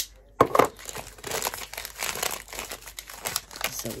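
Brown paper bag crinkling and rustling as the tape on it is undone and a candle is unwrapped. A sudden loud rustle about half a second in is the loudest moment, followed by steady crackly handling of the paper.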